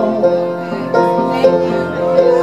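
Upright piano played live, sustained chords with new chords struck about a second in and again shortly after, between sung lines.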